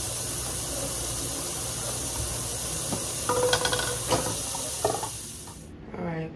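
A steady rushing hiss, with a brief voice a little past the middle. The hiss cuts off suddenly near the end.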